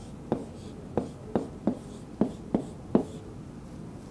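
Plastic pen tip tapping and stroking on the glass of an interactive flat-panel display while writing a word: a string of about seven short, sharp clicks over three seconds.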